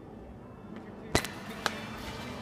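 Two sharp clicks about half a second apart, the first louder, over a low murmur of voices.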